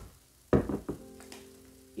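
A sharp plastic knock about half a second in, from handling the stacked formula-powder dispenser and baby bottle, followed by a low steady held tone.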